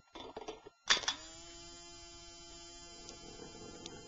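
Car parts in a chain reaction clicking and knocking against one another, then a sharp strike about a second in that leaves a ringing tone, held for a couple of seconds and slowly fading.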